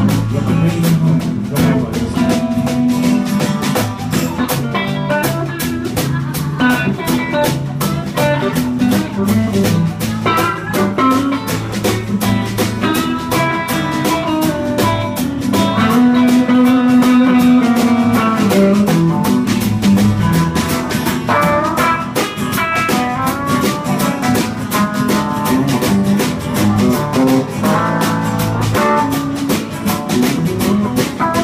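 Live blues band playing an instrumental stretch: electric guitar and acoustic guitar over a drum kit keeping a steady beat.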